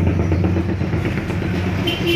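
A motor engine running with a steady, low, even drone.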